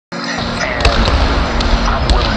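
Basketball bouncing on a hardwood gym floor, a few separate bounces over a steady background of noise.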